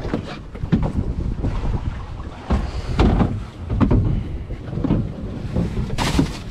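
Wind buffeting the microphone on a small boat at sea, in uneven gusts, with a few short knocks.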